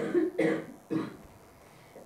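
A man coughing three times in quick succession into his hand, a short cough about every half second.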